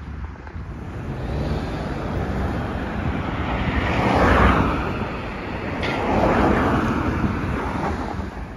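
Road traffic: cars passing close by through an intersection, their tyre and engine noise swelling to a peak about four seconds in and again about six and a half seconds in.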